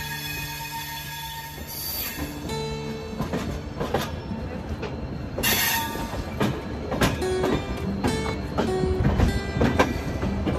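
Passenger train rolling slowly into a station, its wheels clicking irregularly over rail joints and points over a steady rumble, with a couple of brief noisy bursts from the running gear. Background music plays underneath.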